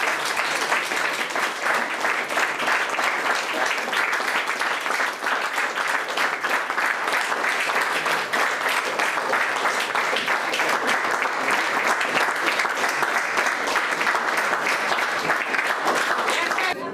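An audience applauding steadily, many people clapping at once.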